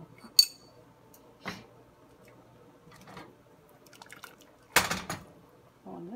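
Kitchen metalware clinking: a sharp metallic clink with a brief ring less than half a second in, a softer knock about a second later, and a louder clatter lasting about half a second near the end.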